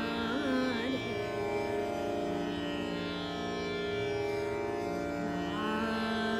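A woman singing a thumri in Raag Mishra Tilak Kamod over a steady drone. A quick ornamented phrase comes about half a second in, then long held notes, and a new phrase glides in near the end.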